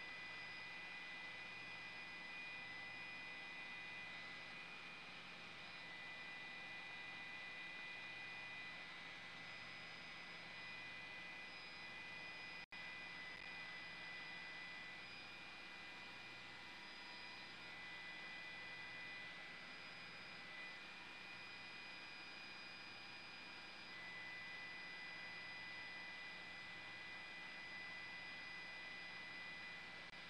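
Faint steady hiss and low hum with several thin, steady high-pitched tones running through it. The sound cuts out for an instant about 13 seconds in.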